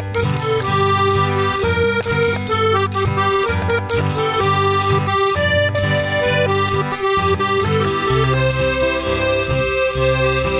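Instrumental break of an upbeat children's song: accordion carrying the tune over a bass line, with a triangle struck in a steady rhythm.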